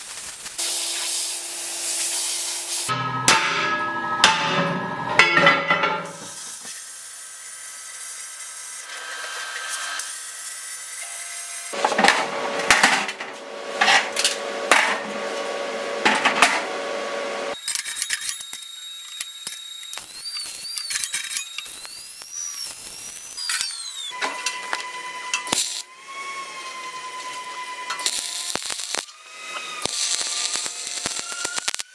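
A run of metalworking sounds: a MIG welder's steady hissing crackle at the start, then steel struck again and again and ringing, in two spells of blows.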